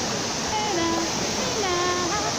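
Trevi Fountain's water cascading over its rocks into the basin, a steady rush. Over it a voice sings two drawn-out notes, one about half a second in and another near the end.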